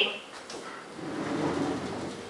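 Sliding wardrobe door pulled across, rolling along its track for about a second and a half after a light click about half a second in.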